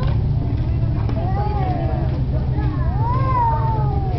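A toddler's high, wordless calls, each sliding up and down in pitch: a short one about a second in and a longer rise-and-fall near the end. Underneath runs a steady low rumble.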